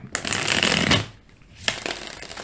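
Tarot deck being shuffled by hand: a dense rustle of card edges for about a second, a short pause, then a sharp tap and a softer shuffle near the end.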